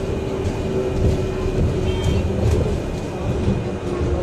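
Upper-deck cabin of a moving battery-electric double-decker bus (Volvo BZL Electric with MCV body): steady low road rumble with a thin constant whine and a few faint rattles and clicks.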